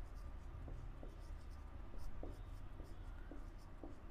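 Marker pen writing on a whiteboard: faint, scratchy strokes with short ticks as letters are drawn.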